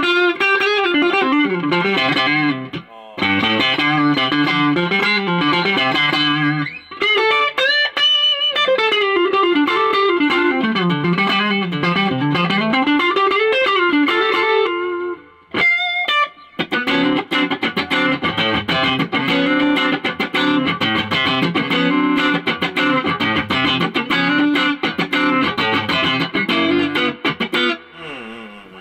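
Electric guitar played through an amplifier, running through an Allies VEMURAM all-brass guitar cable. It plays continuous phrases of notes with pitch bends, with brief pauses about 3 and 7 seconds in and again about halfway through.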